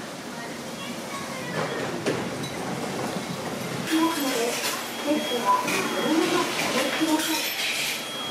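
Restaurant ambience: indistinct voices, chopsticks and dishes clinking against ceramic plates, and a high electronic beep sounding on and off. It gets busier about halfway through.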